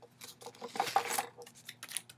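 Rustling and scraping of a package being handled, with a few sharp clicks near the end.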